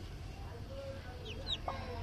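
Broody hen giving low clucks while her newly hatched chick peeps twice, high and falling, about a second and a half in.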